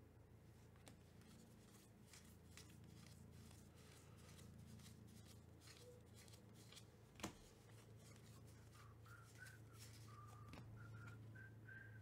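Near silence, with faint ticks and clicks of cardboard trading cards being slid and flicked through the hands, and one sharper card click about seven seconds in.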